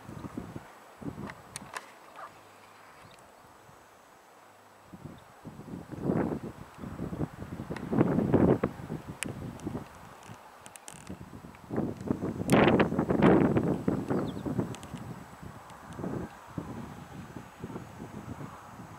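Wind buffeting the microphone in irregular gusts, strongest about six, eight and twelve to fourteen seconds in.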